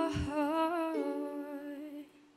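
A young woman's voice holding the last note of a song with a wavering vibrato over ukulele chords, the chord changing about a second in, the sound fading away near the end as the song closes.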